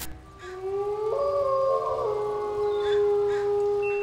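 Wolves howling: several long, overlapping howls, the first rising in pitch and then held steady.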